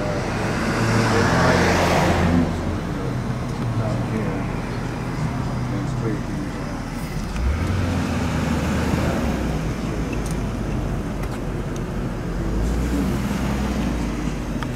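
Vehicles moving close by: a swell of passing road noise in the first couple of seconds, then low engine rumble from a box truck that swells again near the end as it pulls through the gate.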